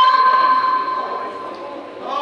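A young woman's Qur'an recitation over a microphone, a long held note that fades out over the first second and a half, before the next phrase begins at the very end.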